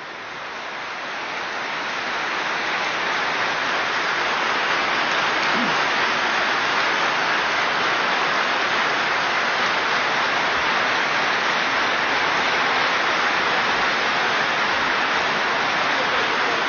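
A large audience applauding, the applause swelling over the first couple of seconds and then holding steady.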